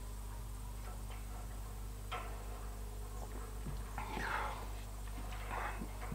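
A man drinking beer from a glass: faint sips and swallows, then a soft breathy exhale about four seconds in, over a low steady hum.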